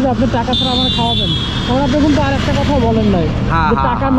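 Men talking close up over a steady low rumble of road traffic. A high, thin steady tone sounds from about half a second in and fades out after about a second and a half.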